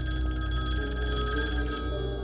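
Telephone ringing: an incoming call, the ring starting suddenly and continuing steadily, over background music.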